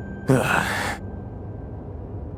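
A man's single short, breathy sigh about half a second in, over a low steady hum.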